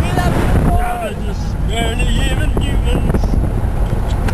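Wind buffeting the microphone and the low rumble of a moving vehicle, with young men's voices shouting over it. The rumble is heaviest in the first second, then eases.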